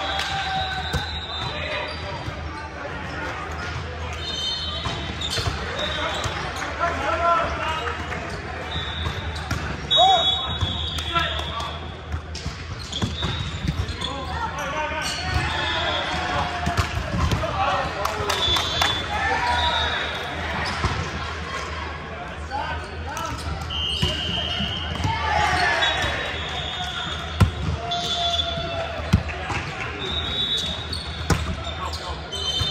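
Echoing indoor sports-hall sound during volleyball play: sneakers squeak often on the hardwood court, and the ball thuds off hands and floor, loudest about ten seconds in and again near the end. Indistinct voices of players and onlookers run throughout.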